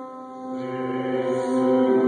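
Church music: slow, chant-like singing over long held notes. The chord changes about half a second in as a lower bass note enters.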